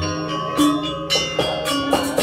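Balinese gamelan playing: bronze metallophones and gongs ringing in layered sustained tones, with a quicker run of struck notes in the second second.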